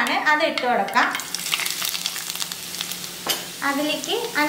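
Sliced ginger sizzling in hot oil in a pan. A steady crackling hiss starts about a second in.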